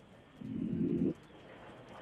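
A caller's voice over a telephone line: one short, low, muffled vocal sound lasting under a second, about half a second in.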